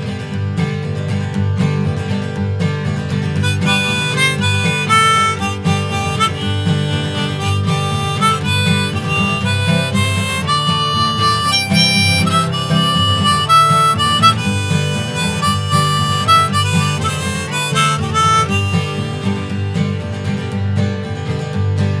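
Instrumental break in an acoustic folk-punk song: strummed acoustic guitar with a lead melody of held notes over the top.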